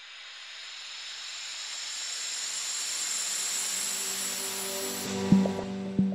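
Outro sound design: a hissing riser that swells gradually for about five seconds, then a sharp impact that leaves a low ringing tone, with a second hit at the end.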